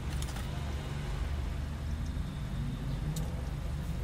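Steady low hum of a car idling, heard inside the cabin, with a few faint clicks from something handled in the seat.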